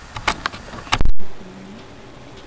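A few sharp clicks and knocks, then a very loud thump about a second in that cuts off abruptly into a brief moment of dead silence.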